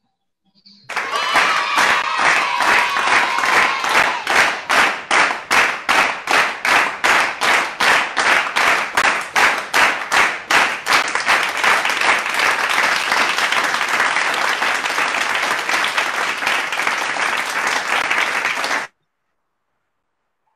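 Recorded applause sound effect played from a presentation slide: rhythmic clapping in unison at about three claps a second, turning into a dense round of applause, then cutting off suddenly near the end.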